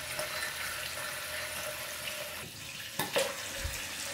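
Bathroom mixer tap running a thin stream into a ceramic washbasin, a steady rush of water, with a single knock about three seconds in.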